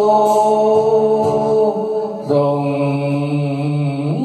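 Closing of a slow Vietnamese song sung by a man through a microphone: long held notes over sustained backing music, with one change of note and chord about two seconds in.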